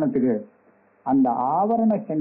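Only speech: a man lecturing, with a pause of about half a second near the middle.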